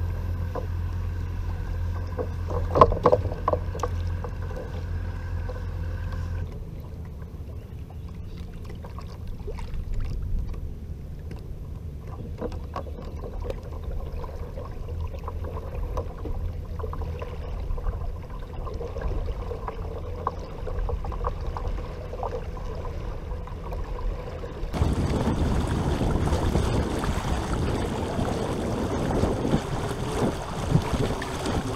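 Electric trolling motor pushing a kayak: a steady low hum with water moving along the hull, and a few sharp knocks about three seconds in. About six seconds in the hum's higher steady tones drop away. Near the end the sound switches suddenly to a loud, even rush of wind on the microphone.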